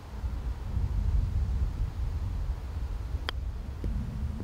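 Wind buffeting the microphone in a steady low rumble, with one sharp click about three seconds in: a six iron striking a golf ball off a sandy lie for a low chip.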